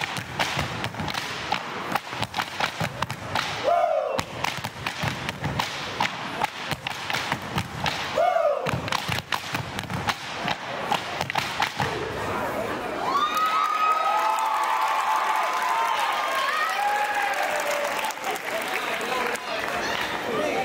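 Cane step routine: rapid cane strikes and foot stomps on a hardwood gym floor, with a short shouted call about every four seconds. About twelve seconds in the stepping stops and the crowd cheers and whoops.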